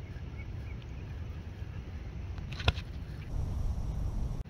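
Steady low outdoor rumble with one sharp click a little before three seconds in.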